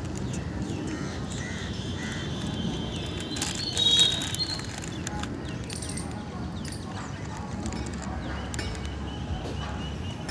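Outdoor ambience: a steady low rumble like wind on the microphone, with a brief high bird-like chirp about four seconds in.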